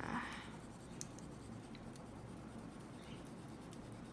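An oil pastel stick scribbled back and forth on paper: a faint, dry scratching, a little louder in the first half second.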